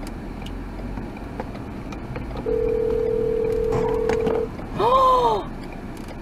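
A car horn sounding one steady note for about two seconds as a crash happens at the intersection ahead. Just after it comes a short, louder squeal that rises and then falls in pitch, with a noisy burst.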